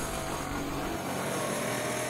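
A small 200 cc single-cylinder two-stroke engine of the 1931 Maikäfer prototype car running steadily as the car drives along, a steady drone.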